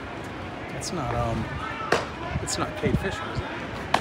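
A baseball smacking into a leather glove in a bullpen: two sharp pops about two seconds apart, over voices and a steady ballpark crowd hubbub.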